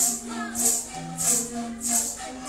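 Kuna panpipes playing a short repeating melody in changing notes, with maracas shaking in a steady rhythm of about three shakes a second, the music of a traditional Kuna dance.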